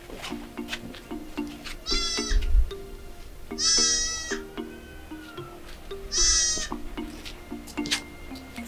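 A goat bleats three times, each call under a second, the middle one the longest, over background music of a repeating plucked-string figure.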